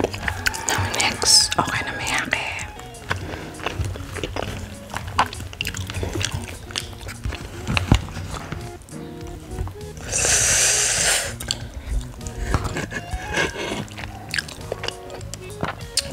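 A metal spoon scooping and scraping food topped with bonito flakes in a plastic bowl, with close-up chewing and mouth clicks over background music. About ten seconds in there is a louder rasping scrape lasting roughly a second.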